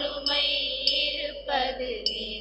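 A church hymn sung to instrumental accompaniment, with a soft regular beat a little under twice a second.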